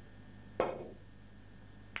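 Snooker cue tip striking the cue ball once for a swerve shot played with the cue slightly raised: a sharp click about half a second in with a short ring after it. A shorter, fainter click near the end.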